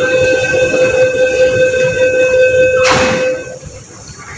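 Hong Kong MTR door-closing warning tone: a steady, loud tone held for about three and a half seconds. The train and platform screen doors bang shut about three seconds in, near the end of the tone.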